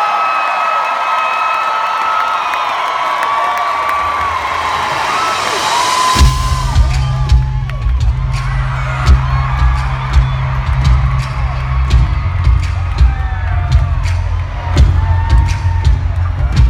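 Arena crowd cheering and screaming; about six seconds in a live band's song starts with a heavy bass and a steady pounding drum beat, the crowd still screaming over it.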